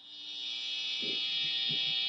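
Electric guitar amplifier humming and buzzing with a steady high-pitched whine, growing louder over about the first second and then holding steady, with a couple of faint low knocks.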